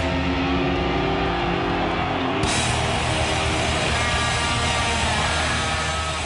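Loud heavy metal music with electric guitar, dense and steady; it turns brighter and fuller about two and a half seconds in.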